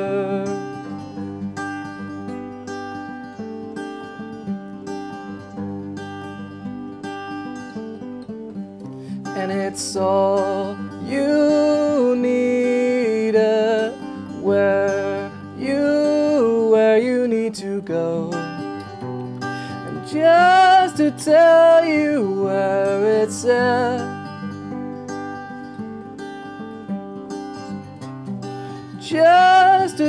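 Acoustic guitar playing the same repeating lick between chords. A man's singing voice joins it about ten seconds in.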